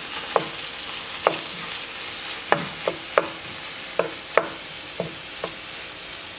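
Diced chicken, onions and peppers sizzling in a nonstick frying pan while a wooden spatula stirs them. The spatula knocks against the pan about ten times.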